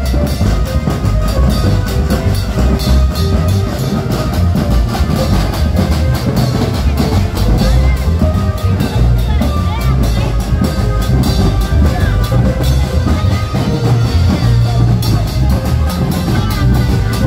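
Loud carnival music from a truck-mounted sound system, heavy in bass, with a steady beat of drums and cymbal hits and held melodic notes over it.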